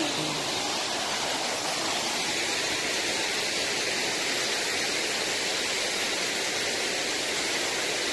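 Waterfall: a steady rush of water falling down a rock face in several streams.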